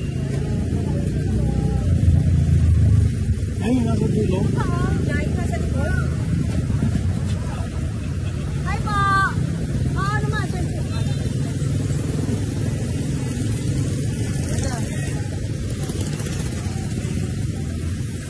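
Street traffic: motorcycle and tricycle engines running and a car moving close by, a steady low rumble that is loudest about two to three seconds in.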